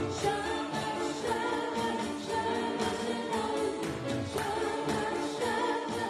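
A woman singing a worship song into a microphone, backed live by an upright piano and an electronic drum kit keeping a steady beat.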